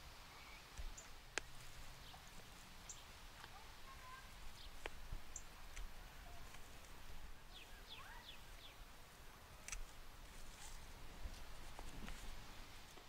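Hand pruners snipping the stems of a potted plant, a few sharp clicks spread out, over faint bird chirps in the background.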